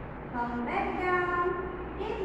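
A woman's voice speaking slowly in long, held tones, with no other sound standing out.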